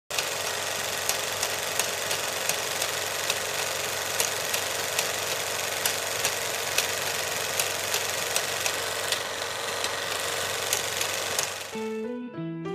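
Steady hiss with a sharp click a little more than once a second. Near the end it stops and piano music begins.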